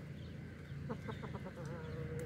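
Chickens clucking: a quick run of about five short clucks about a second in, then a long, wavering drawn-out call that carries on past the end.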